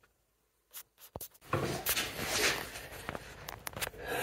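Near silence, then from about a second and a half in, uneven scratchy rubbing of sandpaper on the wood of an elm bowl, with a few small clicks.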